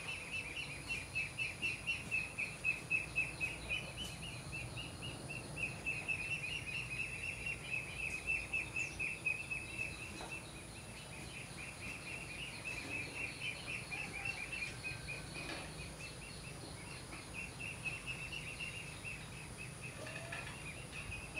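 Outdoor ambience: a rapid, unbroken train of high chirps from a small wild creature, strong at first, fading about halfway and picking up again near the end, over a faint steady high hiss.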